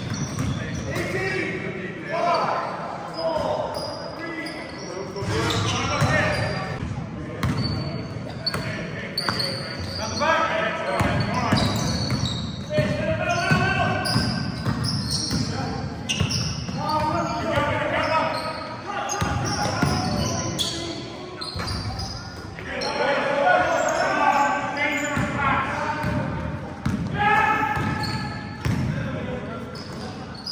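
Basketball game in a large sports hall: the ball bouncing on the court with repeated sharp knocks, shoes squeaking briefly, and players' voices calling out, all echoing in the hall.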